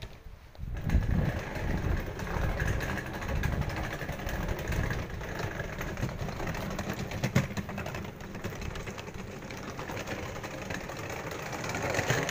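Steady rumble of street traffic, starting about a second in, with scattered light clicks over it.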